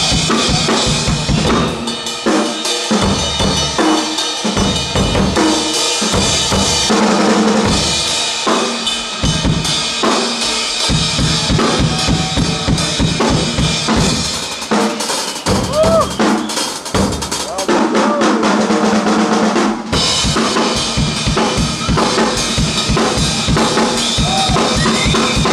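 Two drum kits played together in a loud drum duet: a dense, continuous run of bass drum, snare and tom hits under ringing cymbals.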